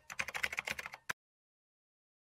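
Computer-keyboard typing sound effect, a rapid run of key clicks, cutting off abruptly about a second in and followed by dead silence.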